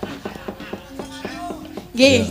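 Javanese gamelan playing in a gap between sung lines: metal keyed instruments are struck in a steady pattern, about four strokes a second, and their notes ring on as held tones.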